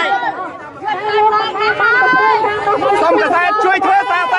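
Speech only: several voices talking over one another in a crowd.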